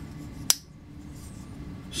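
Koenig Arius folding knife's blade snapping shut with a single sharp click about half a second in, as it drops onto the detent ball. The detent is very strong: the ball sits half-buried in a hole in the blade.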